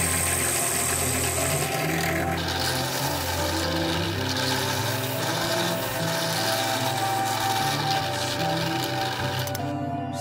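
Drill press running steadily as its bit bores into an amboyna burl wood blank, under background music.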